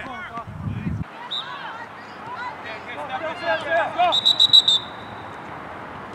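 Distant players' shouts across an open field, then about four seconds in a referee's pea whistle sounds one short trilled blast, the loudest sound here, signalling the kickoff.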